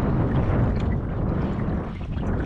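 Wind buffeting the microphone over water sloshing against a kayak, a steady noisy rush with no clear separate events.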